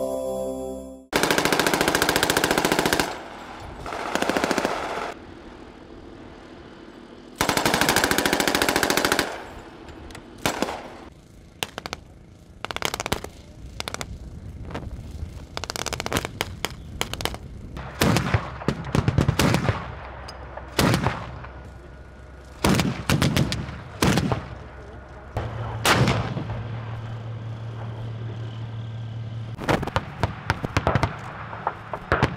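Automatic machine-gun fire: long bursts of rapid shots early on, then shorter bursts and single shots. A steady low hum sets in a few seconds before the end.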